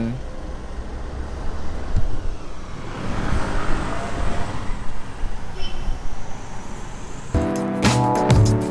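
Steady low rumble of a car heard from inside the cabin, with traffic outside. Background music with a beat comes in near the end.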